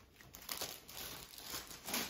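Clear plastic protective film over a diamond-painting canvas crinkling as a hand presses and smooths it, in irregular crackles with a louder swell near the end.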